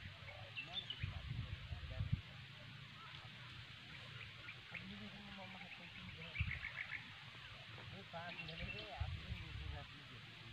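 Wind gusting over the microphone in uneven low rumbles, with faint voices talking and a few short high chirps.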